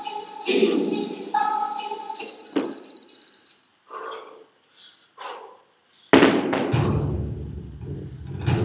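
A high electronic beeping tone, pulsing rapidly, for the first three and a half seconds over voice or music in the background, then a loud sudden noise about six seconds in followed by a low rumble.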